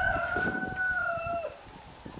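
A rooster crowing: one long, drawn-out crow that holds its pitch and then tails off downward about one and a half seconds in.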